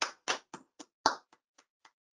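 Hand claps heard over a video call, sharp separate claps about three or four a second with silence between them.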